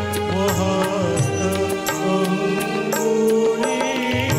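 A man singing an Odia devotional song (bhajan) into a microphone, backed by a live band with keyboard, guitar and a steady percussion beat.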